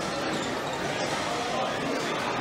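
Indistinct background chatter of voices, mixed with the running of LEGO trains on the layout.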